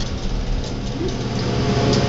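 A steady low mechanical hum with no clear events.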